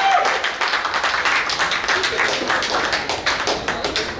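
A small crowd clapping, with many quick, irregular claps, and voices underneath.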